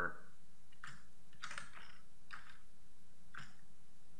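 A handful of faint, scattered clicks and taps from a computer keyboard and mouse, over a steady low background hiss.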